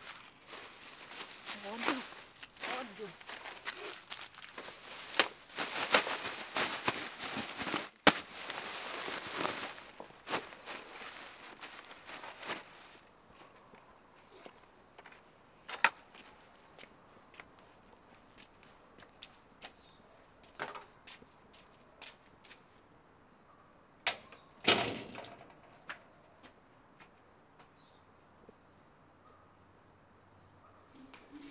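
A black plastic rubbish bag rustling and crackling as crumpled paper and foil litter are stuffed into it, dense and busy for the first dozen seconds or so. After that it is quieter, with scattered footsteps and knocks and a sharper thump about 25 seconds in.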